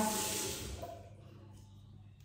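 Water running briefly from a bathroom tap, fading out within about a second as it is shut off, then near silence.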